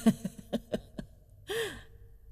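A woman laughing softly in a few quick breathy chuckles, about four a second, then a breathy sigh with a falling pitch about one and a half seconds in.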